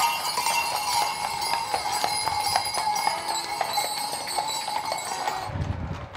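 Many small bells on a horse's ornate harness jingling steadily as the horse is led along a paved street, with hoof clops on the pavement. The jingling cuts off suddenly near the end.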